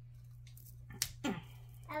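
A single sharp click of a Beaker Creatures toy pod's packaging being opened by hand, about halfway through, over a steady low hum.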